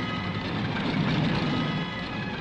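Vehicle engine sound effect for a small exploration buggy driving, a steady low rumble.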